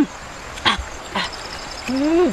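Short vocal calls, each rising then falling in pitch, repeating about once a second, with two sharp clicks between them.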